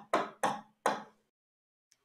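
Four quick, sharp taps in about a second on an interactive display board's touchscreen as it is cleared and moved to the next slide.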